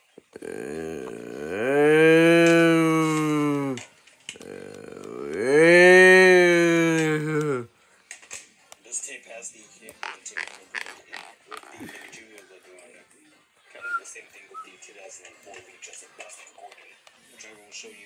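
A person's voice drawn out in two long, loud moo-like calls, each about three seconds, rising and then falling in pitch. After that, quieter sound from the TV with scattered faint clicks.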